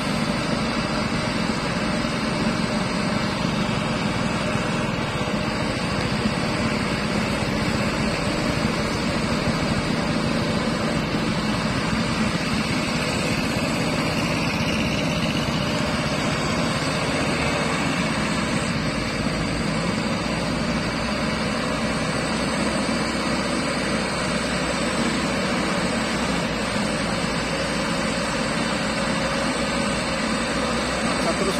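Diesel engine of a loaded Mitsubishi Colt Diesel light truck running steadily under heavy load as it forces its way slowly through thick mud.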